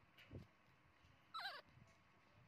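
A short, high, wavering squeak from an animal, about one and a half seconds in, against near silence.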